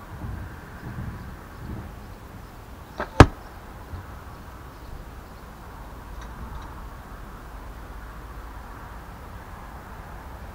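Carbon arrow striking the target close by: one sharp, loud smack about three seconds in, with a fainter click a split second before it.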